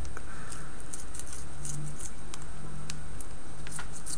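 A few faint, light clicks and ticks of a modelling blade and small model track links against tape and a cutting mat, over a steady low hum.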